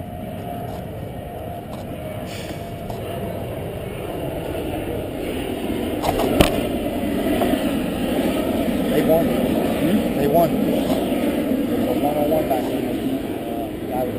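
Unintelligible chatter of several people talking at once, growing louder through the middle, with one sharp knock about six seconds in.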